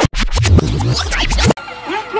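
DJ record-scratch effect over a heavy bass beat, a stinger laid over an edited transition; it cuts off sharply about one and a half seconds in. Live music with a singing voice follows.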